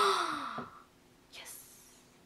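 A girl's spoken word trailing off with a falling pitch, then one short, breathy gasp about one and a half seconds in.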